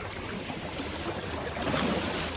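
Small lake waves lapping and washing over shoreline rocks close by, a steady irregular swash.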